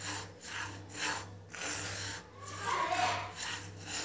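Silicone spatula stirring dry granulated sugar around a nonstick pan, a gritty scraping rasp with each of several strokes. The sugar is still grainy, just starting to melt over a low flame for dry caramel.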